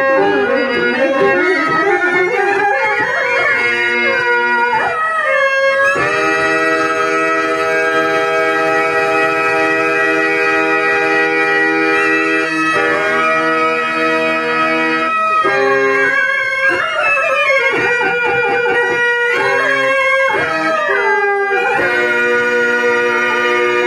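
A Telugu drama padyam (verse) sung in a slow, ornamented melody, with long held notes and sliding turns between them, over a sustained reed-organ accompaniment like a harmonium.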